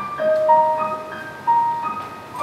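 Yamaha digital stage piano playing a slow jazz ballad line of single notes, a new note every third to half a second, each left to ring out.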